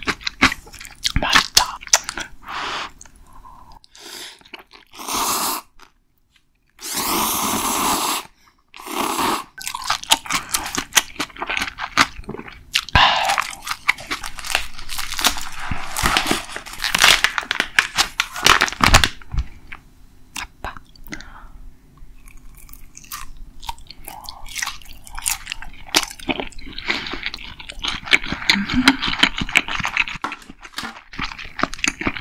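Close-miked eating: a person biting and chewing crunchy food, with many sharp crackling crunches and a couple of longer, denser noisy stretches about five and seven seconds in.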